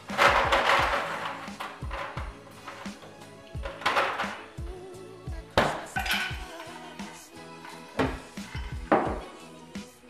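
Background music, with several sharp clinks of ice cubes being dropped into a cocktail glass, the loudest near the start and around the middle and end.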